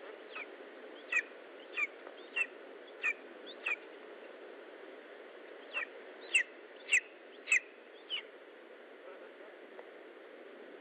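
Lesser spotted eagle chick calling: short, high whistled calls, each falling in pitch, in two runs of about six with a pause of about two seconds between them, over a steady background hiss.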